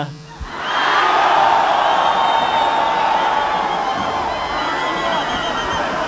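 A very large outdoor crowd cheering and shouting in response to a speaker. It breaks out about half a second in, right after a short pause, and holds loud and steady.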